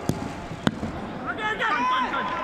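A football being kicked: two sharp strikes, the second, louder one about half a second after the first, with players shouting on the pitch.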